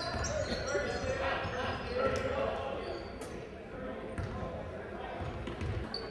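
Basketball gym sound: voices talking in a large echoing hall, a basketball bouncing on the court floor a few times, and short high squeaks of sneakers on the hardwood.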